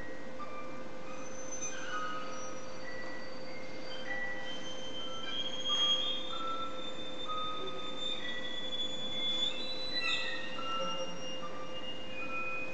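Clarinet, violin and harp trio playing contemporary chamber music live: thin, high sustained notes and short slides come and go over a steady held tone underneath, with no pulse or melody line.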